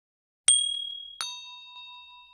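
Notification-bell sound effect: a high ding about half a second in, then a fuller bell ring with several tones about 1.2 s in that fades slowly.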